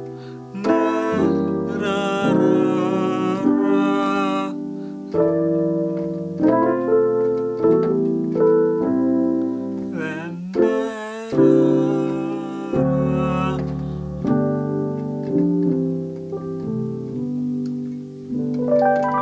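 Keyboard played with an electric piano voice: a run of sustained, full chords such as C major 7 and A minor 7, changing about every second. A brief sliding tone comes through about ten seconds in.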